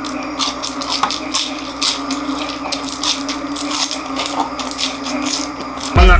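Close-up crunching and chewing of crispy deep-fried pork intestine (chicharon bulaklak), a string of irregular sharp crackles, over a steady hum.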